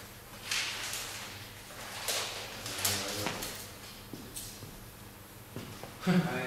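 Sheets of paper rustling as they are handled and turned: a few short, separate swishes over quiet room noise.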